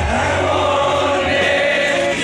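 Live rock concert heard from within the audience: the band's amplified music with a mass of voices singing held notes together, the crowd singing along.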